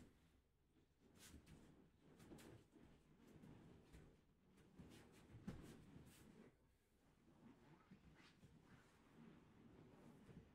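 Near silence, with faint rustling and soft bumps from two people grappling on a training mat in cotton gis.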